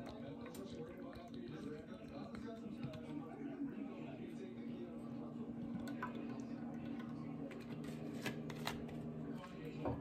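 Quiet kitchen handling sounds as hot sauce is poured from a bottle into a saucepan: a few small clicks and taps from the bottle and its plastic cap in the second half, over a steady low hum.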